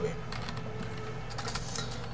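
A few scattered keystrokes on a computer keyboard, soft short clicks.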